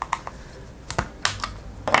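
Hard-plastic toy capsule being pried open at its latch with a small metal tool: a series of sharp plastic clicks and snaps, the loudest near the end as the latch gives.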